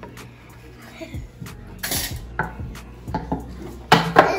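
A small white cardboard gift box and its packaging being handled and opened: scattered knocks and scrapes, a brief crinkle about two seconds in, and a sharp knock near the end.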